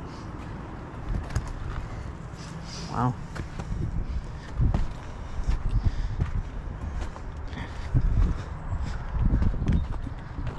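Footsteps walking on a sandy, rocky trail, irregular soft thuds under a continuous low rumble on a moving handheld camera's microphone. A brief vocal sound comes about three seconds in.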